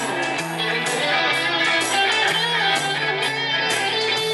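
Live rock band playing an instrumental passage: an electric guitar plays over a bass line that steps between notes, with short bright strikes running through it.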